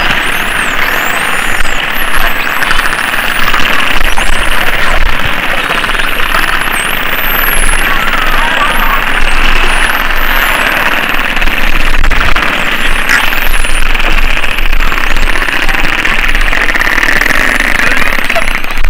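Spinner dolphins whistling underwater: many high whistles sweeping up and down, overlapping, over a dense steady hiss with a few sharp clicks.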